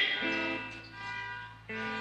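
Soft background music of sustained chords from the church band's instruments, changing just after the start and again near the end.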